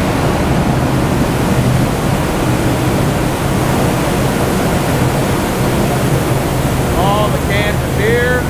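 Loud, steady din of a brewery bottling and canning line, conveyors and machinery running with a constant low hum underneath. A voice briefly cuts through about seven seconds in.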